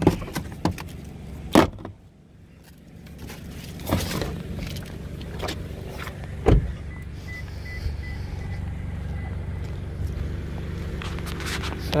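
Car door of a 2020 Toyota Camry handled and shut with a solid thump early on, followed by footsteps and handling noise while walking around the car. A steady low hum runs underneath, with another single thump midway.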